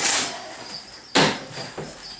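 Two short scraping knocks a little over a second apart, the second one sharper, as a plastic storage tote is handled.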